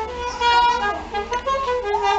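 Soprano saxophone playing a melody, moving from note to note with some notes held.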